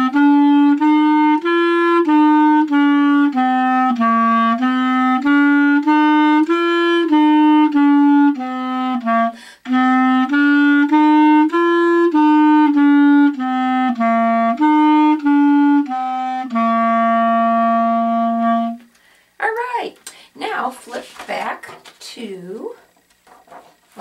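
Solo clarinet playing a stepwise five-note-scale finger exercise that starts on C, the notes moving up and down at about two a second, with a short breath break about halfway. It ends on a long held note.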